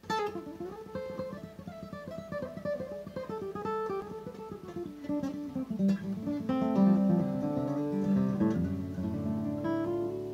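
Steel-string acoustic guitar playing a banjo-style picked lick in the key of D. A quick run of single notes steps down in pitch over the first five seconds, then lower notes ring together, ending with notes left ringing.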